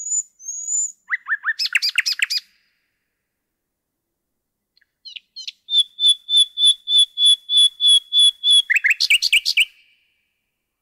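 Common nightingale singing. One strophe ends in a series of whistled notes and then a fast, rattling trill about two seconds in. After a pause of about two seconds, the next strophe opens with a few short notes, runs on with about a dozen rapidly repeated notes at about four a second, and closes with another fast trill.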